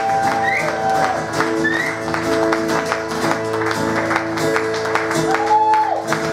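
Acoustic guitar and electric guitar playing together live: steady strumming with held, sometimes bending lead notes, a long note held in the first second and another near the end.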